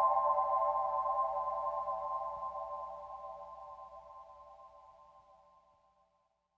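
The end of an ambient music piece: a held cluster of several steady mid-pitched tones, fading out evenly until it is gone near the end.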